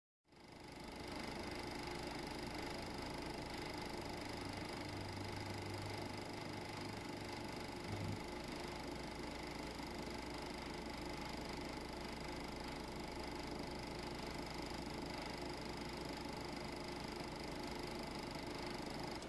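Faint steady hiss with a few thin steady tones, a recording's background noise floor with no speech or music, fading in over the first second.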